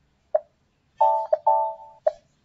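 Computer interface sounds: a short pop, then two loud electronic chime tones about a second in, split by a brief blip, the second one fading away.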